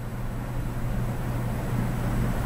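Steady low hum with an even background hiss, with no distinct event standing out.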